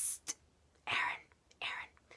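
A teenage boy whispering in three short breathy bursts with no voiced tone: a hiss at the start, then two more about a second in and near the end. He is mimicking a classmate whispering to him.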